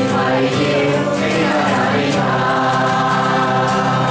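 A Chinese-language worship song sung by a group, led by a man's voice with a strummed acoustic guitar, in steady, sustained notes.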